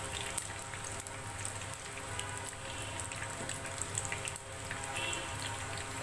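Malpua batter pancakes deep-frying in hot oil: a steady sizzle with scattered small crackles and pops.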